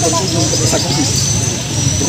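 A man speaking, over a constant low rumble and a thin, steady high-pitched whine in the background.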